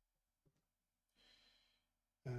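Near silence, with one faint breath out a little past the middle and a tiny click before it.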